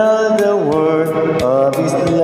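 A man singing held, wordless notes into a handheld microphone over a gospel backing track with light percussion; his pitch slides down about half a second in.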